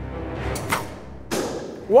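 Recurve bow shot: a sharp click of the string release about two-thirds of a second in, then about half a second later a louder burst as the arrow strikes the target and pops a balloon. Background music plays underneath.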